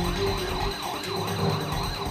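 Electronic siren-like sound effect, a wailing tone that rises and falls rapidly, about three sweeps a second, laid over the show's background music.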